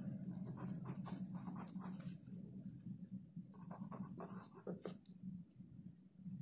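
Ballpoint pen writing on paper on a clipboard: a run of short, irregular scratchy strokes, faint, over a steady low hum.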